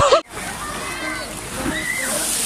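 Laughter cuts off suddenly just after the start, giving way to water splashing and rushing into a pool from a water slide's outlet, with faint voices of people shouting in the background.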